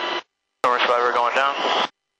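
A man's voice over a helicopter crew intercom, speaking in two short transmissions that cut off abruptly to dead silence in between, with no rotor noise heard.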